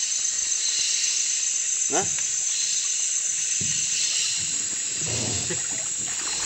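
Steady high-pitched hiss of flooded rainforest ambience, with water moving around the men standing in it.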